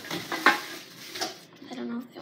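A thin plastic bag hanging on a door rustling and crinkling as it is grabbed and pushed aside while the door is opened, in irregular crackles, the loudest about half a second in. A short low steady tone comes near the end.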